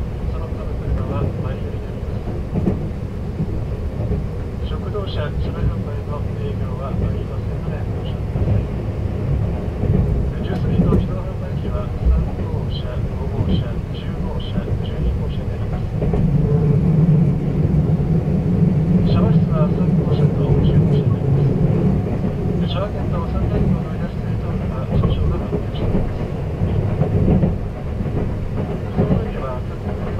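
Running noise of a 285-series electric sleeper train heard from inside a sleeper compartment: a steady low rumble of the wheels on the rails. A louder low hum comes in for about six seconds past the middle of the stretch.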